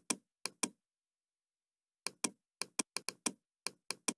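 Computer mouse button clicking: about a dozen short, sharp clicks in irregular runs and pairs, with dead silence in between.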